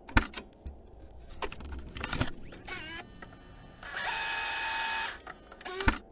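Mechanical sound effects: several sharp clicks and knocks, a brief pitched sound that dips and rises, then about a second of steady whirring with a held tone, and a loud click near the end.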